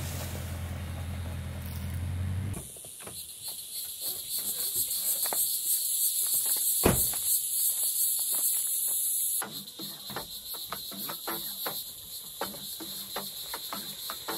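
A pickup truck's engine idles with a steady low hum for the first couple of seconds and then stops abruptly. After that a loud, steady high-pitched insect chorus fills the air, with scattered light clicks and one sharp thump about seven seconds in.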